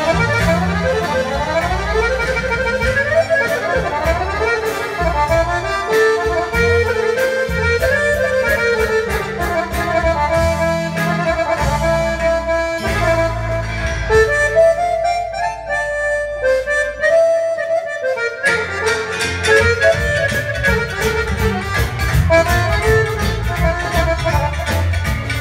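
Balkan accordion music played live: a piano accordion and a chromatic button accordion play fast, ornamented melodic runs over a double bass line. The bass drops out for about a second two-thirds of the way through, then comes back in.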